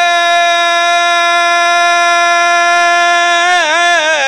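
A zakir's voice holding one long, steady sung note at the end of a line of chanted devotional verse, breaking into a short wavering turn near the end.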